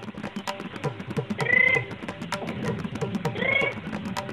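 Two wavering goat bleats, about a second and a half and three and a half seconds in, over background music with a steady percussion beat.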